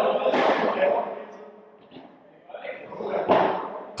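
Padel racket hitting the ball: a sharp hit about a third of a second in and another a little after three seconds, each trailing off in the echo of a large indoor hall.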